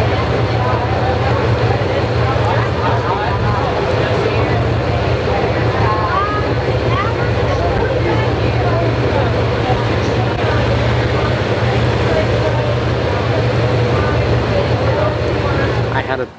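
Motorboat engine running steadily underway, a constant low drone with wind and water noise, and faint voices over it.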